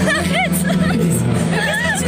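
Crowd chatter in a concert hall, many voices talking at once over steady background music.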